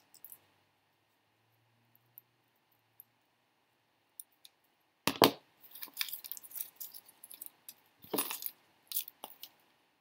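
Faint snips of scissors cutting paper, then a sharp clack about five seconds in as the metal scissors are set down on the cutting mat, followed by paper rustling and light taps as cut collage pieces are handled, with another sharp tap a few seconds later.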